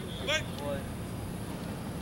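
A voice says a single word, followed by faint distant voices over a steady low rumble.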